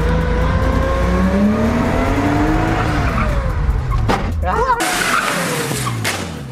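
Drift car engine revving with tyres squealing as the car slides; the engine note climbs over the first couple of seconds, then falls away.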